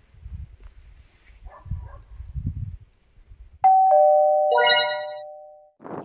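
Low rustling and rumble for the first half. About three and a half seconds in, a loud two-strike "ding-dong" chime of the doorbell kind sounds, its two notes about a second apart, and rings out over about two seconds.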